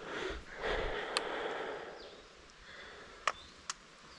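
Sucking on a hydration pack's bite valve to draw water up the drinking tube and clear the air from the line: breathy draws in the first two seconds, then a few light clicks.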